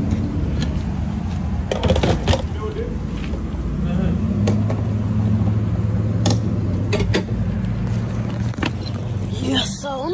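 Gas station fuel pump running with a steady low hum while filling a car, with scattered clicks and clunks from the nozzle and hose being handled.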